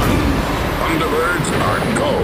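Animated action-trailer soundtrack: a loud, dense, steady rumbling bed of sound effects, with a few short vocal sounds over it about halfway through.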